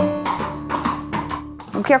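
Background music: plucked acoustic guitar notes ringing and fading out. Speech begins right at the end.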